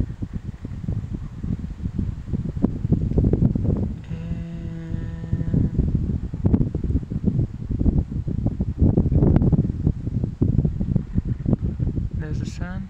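Wind buffeting a phone microphone outdoors, a rough, uneven low rumble. About four seconds in, a steady low hum with a clear pitch sounds for about two seconds.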